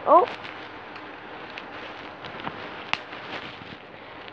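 Faint scattered clicks and light handling noises of plastic Lego bricks being fiddled with, with one sharper click about three seconds in.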